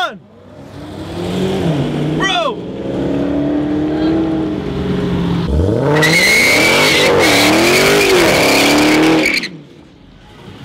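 Car engine revving, its pitch climbing sharply about five and a half seconds in. From about six seconds the tyres squeal with a steady high tone over the noise of wheelspin, a burnout lasting about three and a half seconds that cuts off suddenly.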